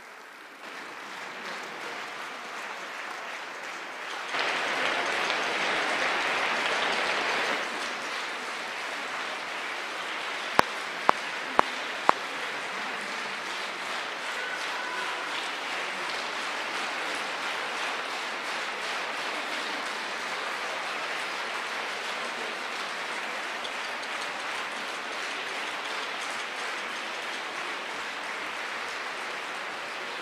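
Concert-hall audience applauding. The clapping swells louder for a few seconds about four seconds in, then settles into steady applause. Four sharp clicks about half a second apart stand out about ten seconds in.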